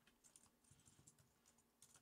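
Faint computer keyboard typing: a scattered run of soft key clicks.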